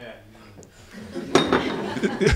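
Near quiet after the music stops, then about a second in a clatter of small clinks, like glasses or cutlery, starts up together with the murmur of audience voices.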